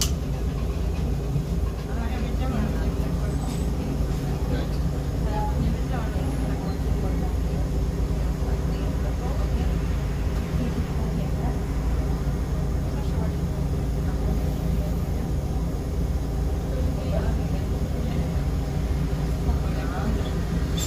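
Inside a 2002 Jelcz 120M/3 city bus under way: the engine's steady low drone and road noise, holding an even level.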